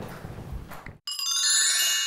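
A short, bright chime sting: many high ringing tones sounding together for about a second, starting abruptly about a second in. Before it, faint room noise.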